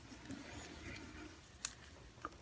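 Quiet small-room tone with a few faint ticks and one sharper click a little past halfway, as instruments and gloved hands are handled.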